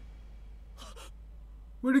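Mostly quiet with a low steady hum and a faint short sound about a second in, then a man's voice starts speaking near the end.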